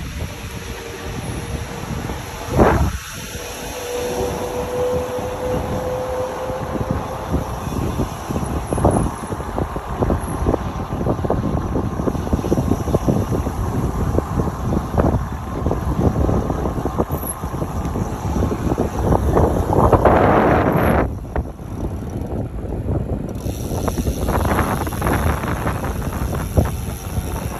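Wind rushing over a phone microphone carried by a moving rider, a loud, continuously fluctuating rush. A short steady whine sounds a few seconds in, and the rush surges louder about twenty seconds in.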